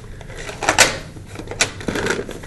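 A few short clicks and knocks of pastel supplies being handled on a work surface, the loudest a little under a second in.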